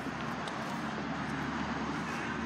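Steady outdoor traffic noise: an even background rush with a low rumble underneath, no distinct events.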